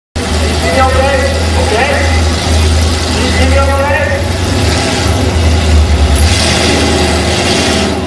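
Drag-racing cars, a Ford Mustang among them, idling at the starting line: a loud, steady, deep engine rumble with voices talking over it.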